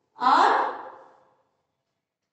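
A single drawn-out vocal utterance with a rising, sing-song pitch, lasting about a second, like a word being chanted aloud in a recitation, followed by silence.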